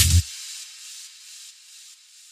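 The end of a trance mix: the kick-drum beat and bass cut off abruptly a fraction of a second in, leaving a high hiss of noise from the track that fades away in steps.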